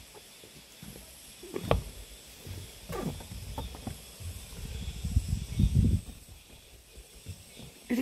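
Handheld phone microphone picking up low, uneven rumbles of wind and handling noise, with a couple of sharp knocks in the first three seconds and a brief faint murmur about three seconds in.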